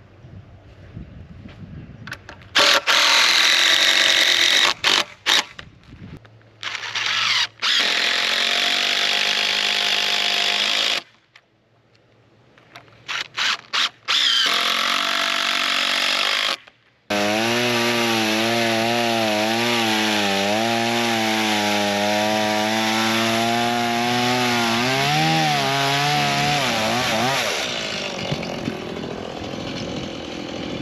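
Cordless power drill running in several separate runs, the motor whine dipping and wobbling in pitch under load as it drives screws into wooden fence runners. The last run is over ten seconds long.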